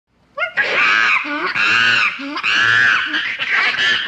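A monkey screeching: a run of about five loud, shrill calls, each under a second long and arching up and down in pitch.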